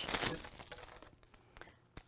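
Clear plastic wrapper of a prefilled saline flush syringe crinkling as it is handled. The crinkling is loudest at first and dies away over about a second and a half, and a single small click comes near the end.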